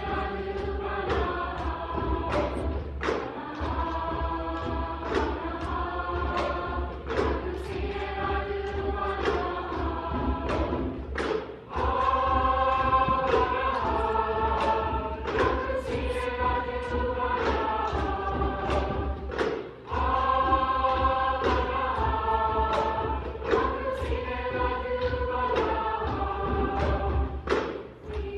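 Middle school mixed choir singing sustained chords, with sharp percussive beats at a regular pulse. The singing breaks off briefly twice, about halfway through and again about three-quarters through.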